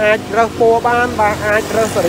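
A person talking without pause, over a steady low hum.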